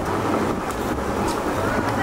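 Steady outdoor background noise: a low traffic rumble with faint voices of people around.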